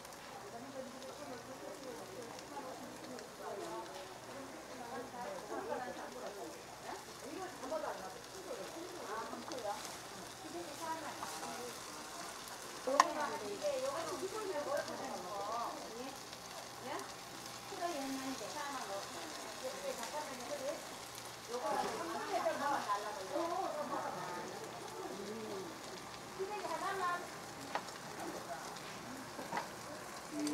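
Sesame-oiled deodeok roots coated in red chili-paste sauce sizzling steadily in a frying pan. A single sharp clack about thirteen seconds in is the loudest sound.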